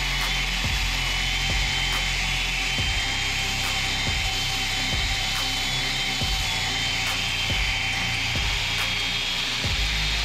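Cordless DeWalt 20V brushless angle grinder driving a belt sander attachment, its abrasive belt sanding around a metal tube and throwing sparks. It gives a steady high whine over a grinding hiss, with light irregular ticks.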